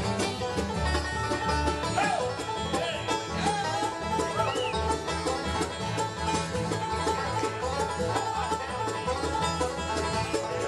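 Live bluegrass band playing an instrumental break: a five-string banjo picking quick rolls at the front, over an upright bass and acoustic guitar.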